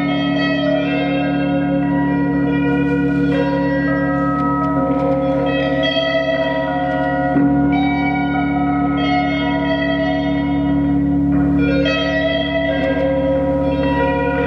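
Ambient electric guitar music: ringing, bell-like Stratocaster notes with long reverb and echo held over a steady low drone, with fresh chiming tones entering every couple of seconds.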